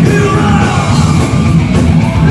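Heavy metal band playing live at full volume: distorted electric guitars through Marshall amp stacks, pounding drums with cymbal hits, and shouted vocals.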